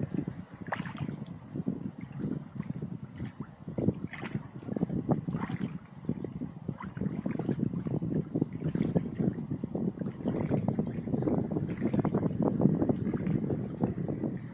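Wind buffeting the microphone along with small waves lapping and splashing at the lakeshore, an uneven crackly rumble that grows somewhat louder in the second half.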